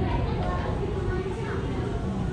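Indistinct chatter of visitors' voices, children among them, over a steady low rumble in a large public aquarium hall.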